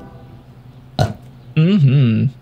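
A man's wordless vocal noise: a short sharp sound about a second in, then a low, wavering voiced sound lasting under a second near the end.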